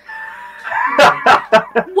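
A woman's drawn-out, high-pitched vocal exclamation, then loud, choppy bursts of laughter about a second in.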